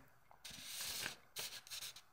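Faint rubbing and hissing as raw naan dough, wetted with salt water, is laid and pressed onto an iron hot plate: about half a second of hiss, then a few short scuffs.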